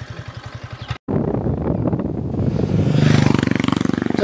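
Motorcycle engine idling with an even, rapid beat; after an abrupt cut about a second in, a motorcycle engine running on the move, growing louder in the last second as it pulls harder.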